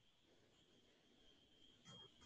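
Near silence: faint room tone with a thin, steady high-pitched tone.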